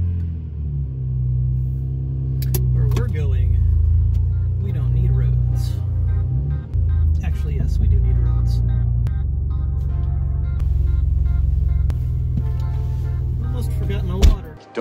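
Background music playing over the low, steady drone of a BMW Z3's straight-six engine heard from inside the cabin while driving. The drone changes pitch in steps a few times.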